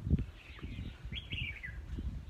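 Birds chirping in the trees, with a short run of high chirps falling in pitch about a second in. Under them runs irregular low rumbling, with a loud thump near the start.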